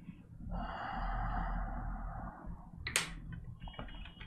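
A long breath out close to a clip-on microphone, lasting about two seconds. A single sharp click follows, then keyboard typing starts near the end.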